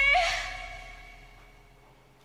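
A woman's high held sung note ends with a short upward flip into a breathy, sigh-like cry, the intense release at the end of a belted phrase. The voice and its reverb then die away over about a second and a half.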